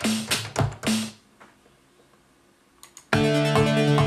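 Electronic dance music playing back from a synthesizer and drum-machine arrangement: a few drum hits, a gap of about two seconds, then a sustained synth part with a steady beat comes in loudly about three seconds in.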